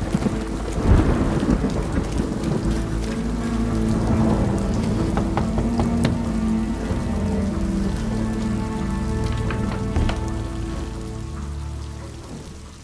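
Steady rain with low rumbles of thunder, under held low musical tones.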